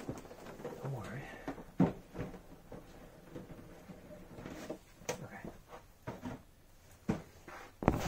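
Handling noise from a cardboard model box being opened and its plastic tray moved close to the phone: scattered sharp knocks and clicks, about four of them, over soft rustling.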